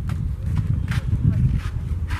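Indistinct background voices with a few sharp footfalls as a player steps down out of a minibus onto the ground.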